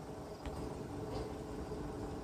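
Small clip-on electric fan switched on with a faint click about half a second in, then running with a faint steady hum.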